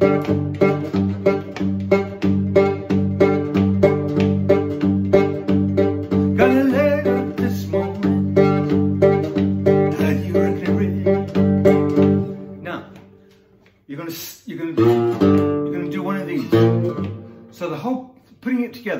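Cigar box guitar played with the thumb and a metal slide: a steady, driving blues groove of repeated bass notes, about three a second. The playing fades out briefly around thirteen seconds in, then resumes with sliding notes.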